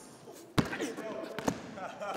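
Basketball bouncing on a gym floor: a sharp bounce about half a second in and a lighter one about a second later.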